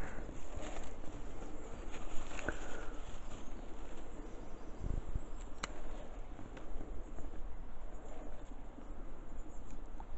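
Bonsai scissors snipping back lime shoots, a few sharp clicks spaced a few seconds apart, with leaves rustling as hands move through the foliage.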